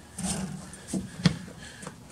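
A few light knocks and rubbing as a painted metal intake manifold is handled and set down on wooden decking, over a faint low hum.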